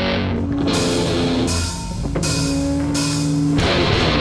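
Heavy metal band playing live: distorted electric guitars and bass hold chords, punctuated by several short drum and cymbal hits. Near the end, the full band breaks into a denser, busier passage.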